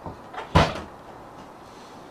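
A light knock followed by a heavier thud about half a second in, something bumping against the wooden shed or its contents as things are shifted inside.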